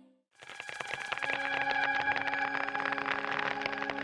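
Title music stops, and after a moment of silence eerie background music begins: held low tones with a dense, rapid clicking over them.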